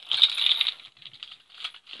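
Small trinkets and keyrings clinking and rattling as they are handled, loudest in the first half second, then a few faint scattered clicks.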